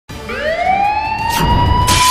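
Siren-like wail rising steadily in pitch over about a second and a half, then holding, with a whoosh and a low rumble near the end: a breaking-news intro sound effect.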